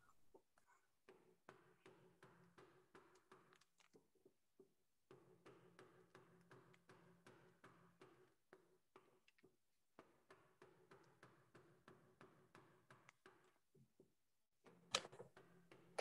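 Near silence: faint clicks of a gouge cutting into a wooden bowl blank, almost muted out by the video call's noise suppression, over a faint low hum.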